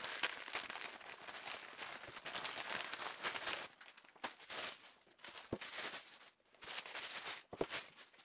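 Plastic mailer bag and the thin plastic wrapping around the watch boxes rustling and crinkling as they are handled, steadily for the first few seconds and then in shorter patches. A couple of light knocks in the second half.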